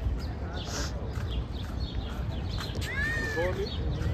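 Steady low rumble of outdoor street ambience, with a brief high-pitched call about three seconds in.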